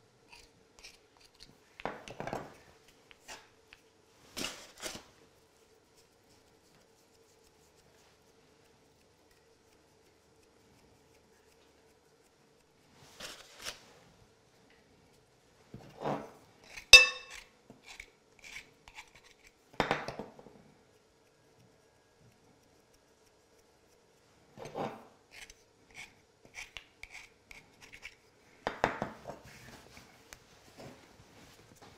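Small metal tartlet tins being handled and set down on a wooden worktop while pastry is pressed into them: scattered light knocks, taps and rubbing, with a pause of several seconds in the middle. The loudest sound, about 17 seconds in, is a sharp metallic clink that rings briefly. A faint steady hum sits underneath.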